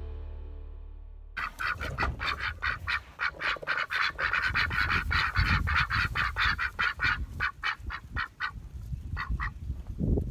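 A group of white domestic ducks quacking loudly and rapidly, about four quacks a second, starting a second or so in and thinning to a last few quacks near the end.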